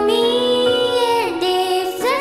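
A ballad with a high lead voice holding a long note, then sliding down to a lower held note about a second in, over a steady sustained accompaniment.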